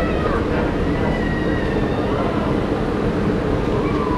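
Steady low rumble of a monorail train standing at the station platform, with a faint thin high tone about a second in and scattered voices of passengers.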